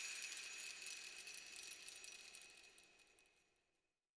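The tail of a bright jingle of ringing bells, fading steadily and dying away about two and a half seconds in.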